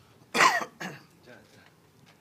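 A person coughing or clearing the throat close to a microphone: one loud cough about a third of a second in, then a shorter, weaker one just after.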